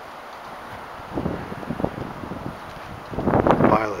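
A man's voice briefly near the end, over wind rumbling on the microphone, with a few soft, indistinct sounds a second or so in.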